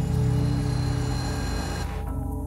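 Electric string quartet with electronic sound playing sustained drone tones, with a rapid flutter in the bass. A hissing layer above the tones cuts off suddenly near the end, leaving the held tones sounding.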